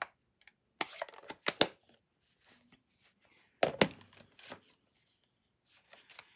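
Sharp taps and knocks of a rubber stamp on a clear acrylic block being tapped onto an ink pad and set down on the work surface. There are several quick taps about a second in and another pair just before four seconds, with light paper rustle between.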